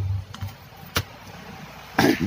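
A single sharp click about a second in, from the detached iPhone X display assembly being handled on a workbench, with a few fainter clicks before it over a low steady hum.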